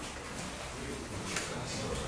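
Quiet small-room tone with faint, indistinct voices in the background.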